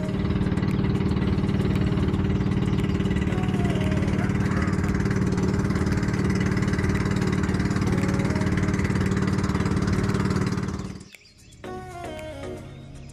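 A small fishing boat's engine running steadily under way, a constant low drone that cuts off abruptly about a second before the end.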